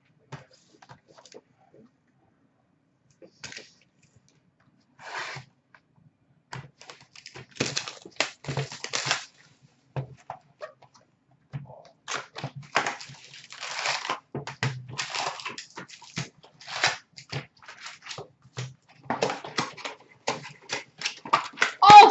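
Foil hockey card packs and their cardboard box being handled and opened: a dense, irregular run of crinkles, rustles and light taps that starts sparse and grows busy after about five seconds.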